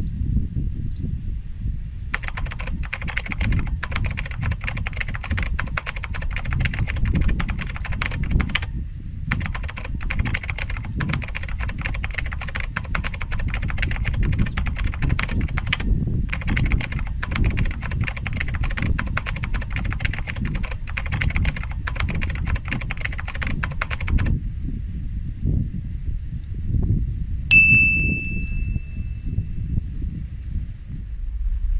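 Typewriter key clatter as a sound effect, in long runs with short pauses, ending with a single bell ding near the end. A low rumble runs underneath.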